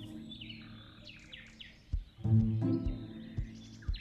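Soft background music over birds chirping; a sustained chord comes in about two seconds in.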